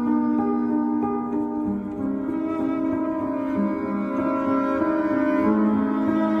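Background instrumental music: sustained, held notes whose harmony changes about two seconds in and again near the end.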